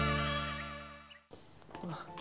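The last held chord of a cartoonish TV title jingle, with warbling high tones, fading away and cutting off about a second in. A faint, quiet background follows.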